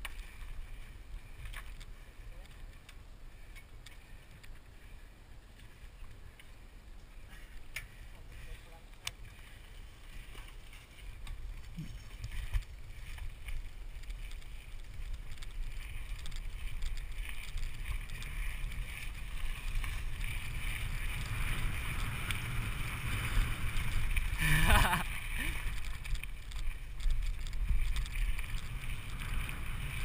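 Mountain bike rolling down a gravel road, heard from a GoPro on the rider: tyre noise on gravel and wind on the microphone. It starts quiet with a few clicks, builds steadily as speed picks up from about a third of the way in, and has one sharp jolt about five seconds before the end.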